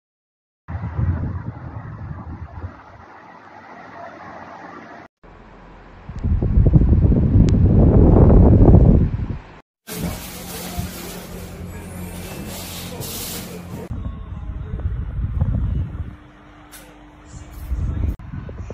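A KDK P40US pedestal fan running, heard in several short clips that cut in and out: a steady low motor hum and rushing air, with a much louder low rumble for a few seconds in the middle.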